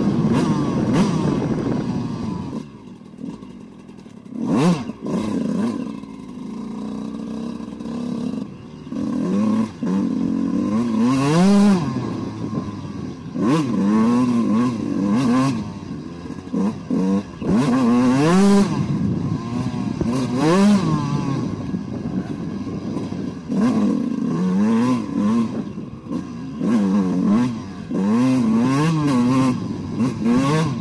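A 2002 Suzuki RM125 with an Eric Gorr 144 big-bore kit: its single-cylinder two-stroke engine and exhaust, heard from the rider's helmet. Held on the throttle at first, it drops off a few seconds in, then revs up and down again and again, the pitch rising and falling every second or two.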